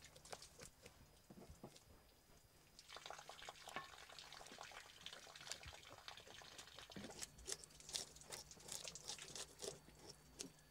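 A knife scraping scales off fresh fish on a cutting board: faint, quick scratchy strokes, busier from about three seconds in.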